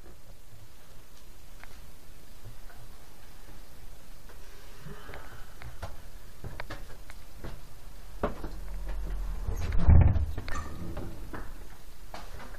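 Scattered light knocks and clicks, with one louder dull thump about ten seconds in.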